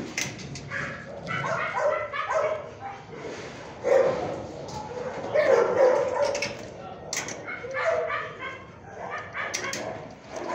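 A dog giving a steady run of short yips, whines and barks, one call after another, with the loudest calls about four and six seconds in.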